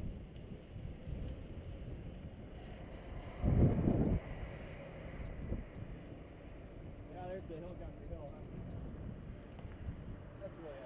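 Wind buffeting the microphone of a camera on a moving bicycle, a low rumble throughout, with a louder gust lasting about a second at about three and a half seconds in.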